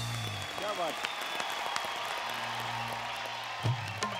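Studio audience cheering and clapping in a break in the song, over a held low note from the band. Near the end a dholak starts playing.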